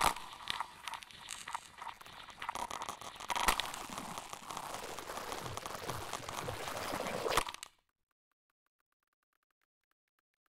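Electronic music: a dense crackling, crunching noise texture with sharp clicks and a few falling glides, starting suddenly and cutting off abruptly about three-quarters of the way in, followed by faint ticking.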